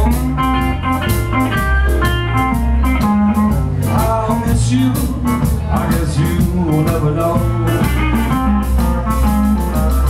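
Live blues band playing: a hollow-body electric guitar picks lead lines over a drum kit keeping a steady beat, with a heavy bass underneath.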